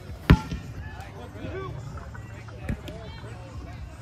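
A red rubber kickball kicked hard, one loud, sharp thud about a third of a second in. A softer thud follows about two and a half seconds later, over distant voices of players.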